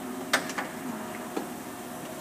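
Car wash tunnel conveyor and machinery running with a steady hum. A sharp click comes about a third of a second in, and a fainter one later.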